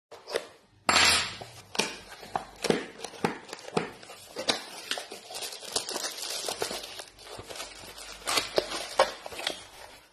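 A cardboard product box being opened and its plastic-wrapped contents crinkling as they are pulled out: a run of sharp crackles and rustles, loudest about a second in.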